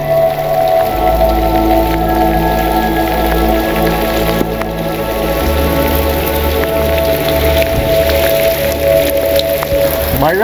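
Steady rain falling, with scattered drops ticking close by, under slow background music of long held notes whose bass shifts about halfway through.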